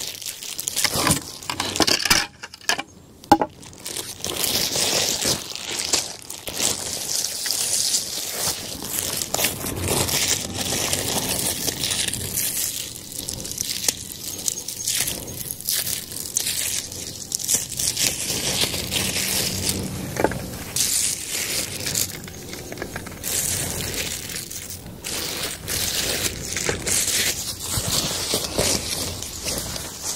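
Plastic bags crinkling and rustling, with small handling knocks, as food is unpacked from a backpack and set out on a mat.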